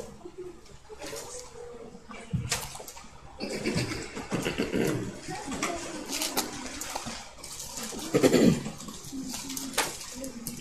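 Thin Bible pages being leafed through, a rustling of paper, with a few soft knocks.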